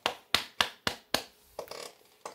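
A quick run of about six sharp taps, roughly a quarter second apart, the last two fainter.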